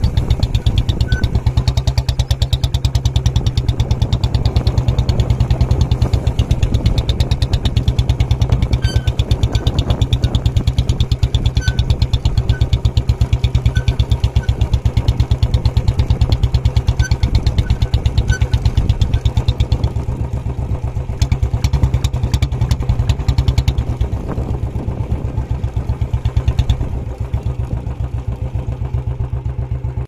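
A motorcycle engine running close by at a low, steady speed, its firing pulses rapid and even. It eases a little about two-thirds of the way through and cuts off suddenly at the end.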